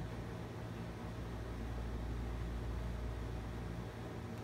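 Steady low hum and hiss of room tone, with no distinct sounds.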